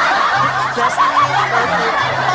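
Loud laughter, several voices overlapping, over background music with a low bass note that repeats.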